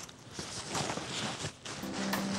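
Fabric rustling and soft bumps as a padded insulated cooler bag is pushed down into a canvas tote bag.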